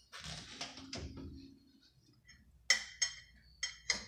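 An oven door being opened, with a low rushing noise and a couple of knocks over the first two seconds. Near the end come several sharp, ringing clinks of metal forks against a ceramic pie dish.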